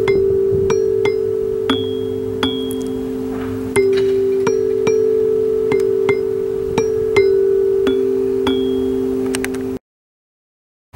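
Instrumental accompaniment music: a held low two-note drone that shifts pitch now and then, under bell-like struck notes coming about one to two a second. It cuts off suddenly near the end.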